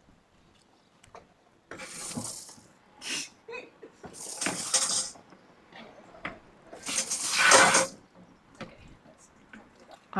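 Water spurting from a garden hose in four short bursts at a plastic water container, the last burst the longest and loudest.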